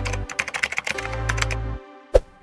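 Computer-keyboard typing sound effect: a rapid run of key clicks that stops just before the end, over background music with a steady bass.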